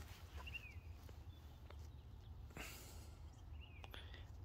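Near silence: faint outdoor background with a low hum, a few faint ticks and two brief, faint high chirps.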